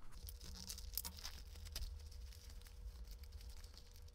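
Faint crinkling and tearing of plastic packaging being opened by hand, with many small scattered crackles.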